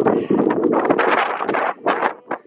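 Wind buffeting the camera's microphone: a loud, continuous rushing that swells and dips in gusts.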